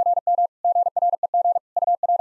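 Morse code sent at 45 words per minute: a single steady tone of about 700 Hz keyed on and off in rapid dits and dahs, with short breaks between characters and words.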